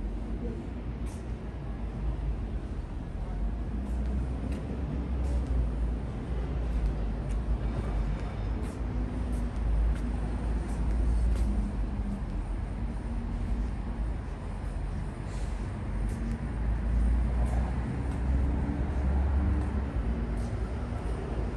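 Steady low rumble of city traffic from the streets below, with a few faint clicks over it.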